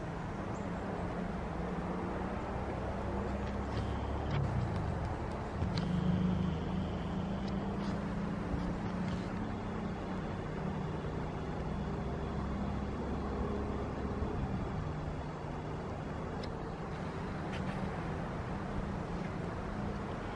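Steady low rumble of distant motor traffic, its pitch drifting slowly, with a few faint crackles from a small burning nest of dry grass and twigs.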